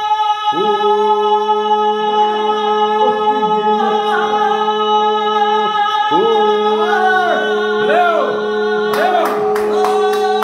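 Men singing a Georgian folk song unaccompanied in parts: a low voice holds a steady drone while a higher voice winds above it in ornamented, arching runs. Rhythmic handclaps join about nine seconds in.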